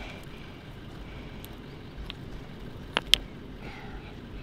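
River stones clacking against each other as they are handled: a faint click about two seconds in, then two sharp clacks in quick succession about three seconds in, over a steady low background rumble.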